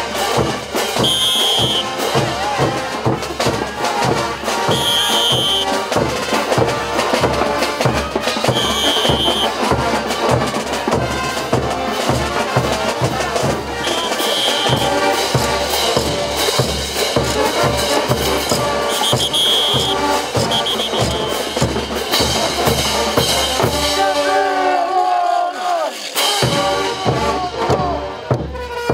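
Brass band playing morenada dance music, with a steady bass-drum and percussion beat under the melody. Near the end the drums drop out briefly while the melody carries on.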